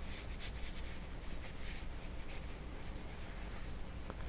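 Faint rustling and scratching of crocheted yarn being handled, as a tapestry needle draws a strand through the fabric, over a low steady hum.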